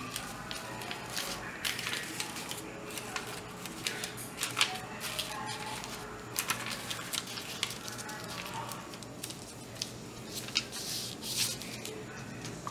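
Paper sewing pattern and cotton fabric rustling and crinkling as hands smooth and fold them on a table, with scattered light taps and clicks.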